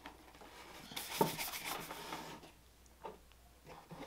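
Faint handling sounds of a leather dress shoe and polish jars on a wooden workbench. There is a light knock about a second in, then a stretch of rubbing, and a small click near the end.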